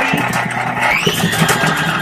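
KitchenAid stand mixer running steadily, its motor humming with a faint high whine as the flat beater mixes a thick cream cheese and relish mixture in the steel bowl.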